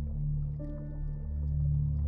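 Calm ambient relaxation music: a sustained low drone, with a soft held note rising above it about half a second in.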